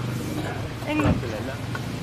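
A few people talking outdoors, their voices fairly distant, over the steady low hum of a car engine idling.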